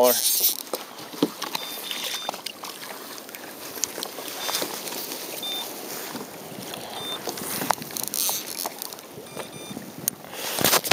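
Wind and water noise around a kayak on open water, with scattered clicks and rustling from handling fly line and gear while a fish is being played. Several short, faint high tones come and go through it.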